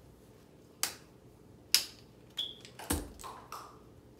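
Sharp plastic clicks from a hand-held action figure being worked, its parts clicking: two single clicks about a second apart, then a quicker run of clicks with a soft thump near the end.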